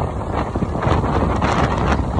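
Wind buffeting the phone's microphone on a moving motorbike, a dense rumbling rush mixed with engine and road noise.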